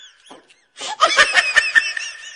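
A person laughing in quick, rapid bursts: a fading tail at first, a brief pause near the middle, then a louder run of laughter from about halfway through.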